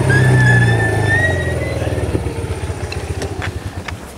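Small quad bike (ATV) engine running, easing off and dying down over a few seconds as the bike slows to a stop, with a faint high whine above the engine note early on.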